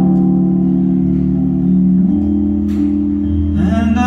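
Electric keyboard holding slow, sustained low chords that change every second or so, with a man's singing voice coming back in near the end.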